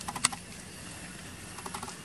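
Baby macaque suckling at its mother's nipple: quick bursts of small clicks, one cluster just after the start and another near the end.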